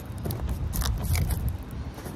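Dometic Mini Heki skylight test-fitted in the cut van-roof opening: a few light clicks and scrapes as its plastic frame is pressed and shifted against the edges of the hole, over a low background rumble.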